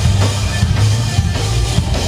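Live rock/metal band playing an instrumental passage: distorted electric guitars over a drum kit with heavy bass drum, loud and continuous.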